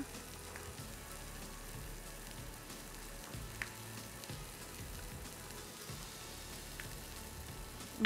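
Pork loin medallions searing in a hot frying pan, a steady sizzle, with a few faint light clicks.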